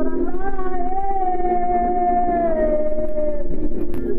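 Song with a singer holding one long note for about three seconds, easing down in pitch near its end, over a steady musical accompaniment.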